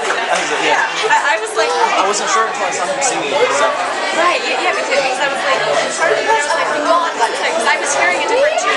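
Many people talking at once, overlapping conversation and chatter filling a room, with no tune being played.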